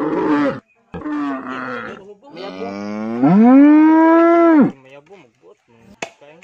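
A loud, long animal call that rises in pitch, is held steady for about two seconds and then cuts off. It comes after two shorter calls in the first two seconds.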